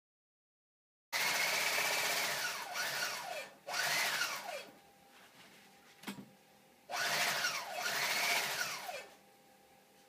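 Sewing machine stitching in three runs of one to three seconds each, starting suddenly about a second in, its motor whine rising and falling in pitch as it speeds up and slows down. A single sharp click comes in the pause before the last run.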